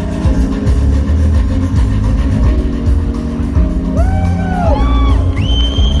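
Live funk band music from the stage, heard loud from the crowd, with a heavy bass line and held chords. From about four seconds in, sliding high notes that rise, hold and fall come in over the band.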